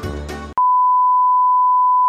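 Background music cuts off about half a second in and is replaced by a loud, steady single-pitch beep: the test tone that goes with TV colour bars.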